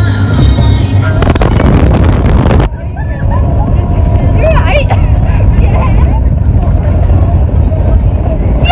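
Speedboat engine running under way, a steady low rumble. The sound changes abruptly a few seconds in, losing its upper range.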